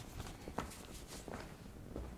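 Faint footsteps: a few soft, uneven steps of a man walking away from a lectern.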